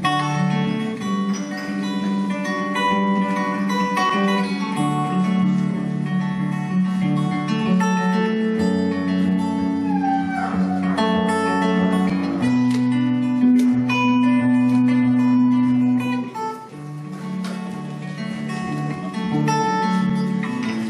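Acoustic guitar playing an instrumental passage of chords and notes, with a brief lull about three-quarters of the way through.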